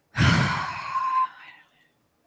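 A woman's heavy sigh close to the microphone: one loud, breathy exhale of about a second and a half that trails off, with a brief voiced note near its end.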